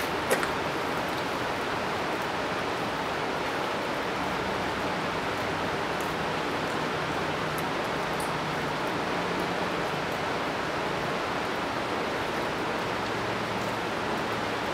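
Steady rushing of flowing river water, an even noise that holds level throughout, with a sharp click just after the start.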